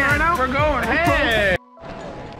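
Excited men's voices vocalising in a sing-song way, the pitch swooping up and down, cut off abruptly about a second and a half in. A faint steady room background follows.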